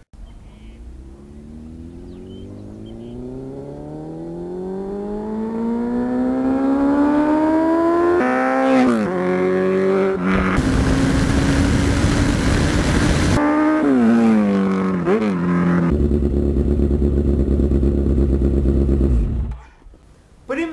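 Sport motorcycle engine accelerating hard, its pitch climbing slowly for several seconds, then dipping and rising again at each gear change before holding at high revs. A loud hiss joins for about three seconds in the middle, and the sound stops shortly before the end.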